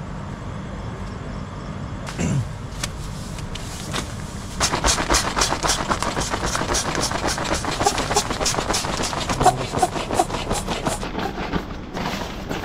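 Rustling and crinkling of nylon and plastic camping bedding being handled and spread out on a tent floor around an air mattress, rising about four and a half seconds in into a dense run of quick, irregular crackles that eases off near the end.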